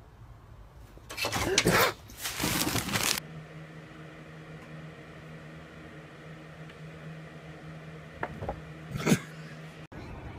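Two cats hissing and yowling in a brief scuffle: two loud, harsh bursts about a second apart, each lasting roughly a second.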